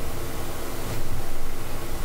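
A steady hiss, even from low to high pitches, growing a little louder about a second in.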